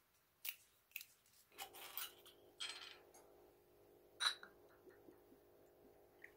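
Metal screw cap being twisted off a glass soju bottle: a few sharp clicks and short crackling scrapes in the first three seconds, then a single louder click about four seconds in.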